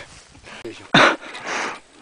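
Two loud, breathy bursts of a person's breath close to the microphone, the first sudden and strongest about a second in, the second softer and longer, from a climber breathing hard at altitude.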